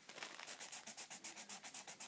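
Green Sharpie marker scribbling on a paper coffee filter, colouring in a shape with quick back-and-forth scratching strokes, about six or seven a second.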